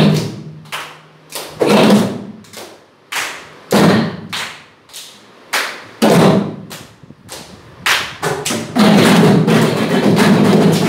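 A drum played in a slow, uneven pattern: strong strokes about every two seconds, each ringing down at a low pitch, with lighter strokes in between, then denser, continuous playing near the end.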